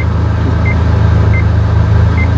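A car's warning chime beeping three times, about once every two-thirds of a second, over the low steady hum of the engine idling, heard inside the cabin.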